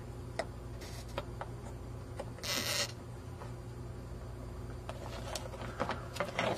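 Faint clicks and taps from a soldering iron tip working a solder joint on a circuit board held in the hand, over a steady low hum, with one short hiss about two and a half seconds in.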